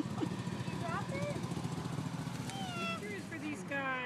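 A car engine running at low speed, a low pulsing hum that fades out about three seconds in, with people's voices over it.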